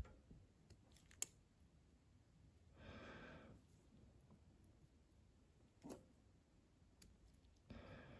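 Near silence: quiet room tone with a few faint clicks, the sharpest about a second in, and two soft breaths, one about three seconds in and one near the end.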